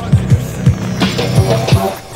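Instrumental underground hip hop beat from a 1990s cassette, with no rapping. Deep kick drums fall in pitch and land several times a second over a held bass line, with snare and hi-hat hits above.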